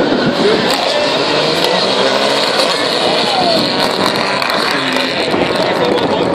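Rally car's engine running hard as it passes along the special stage, its note rising and falling, with spectators talking.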